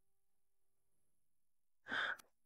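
Near silence, then a brief sigh near the end.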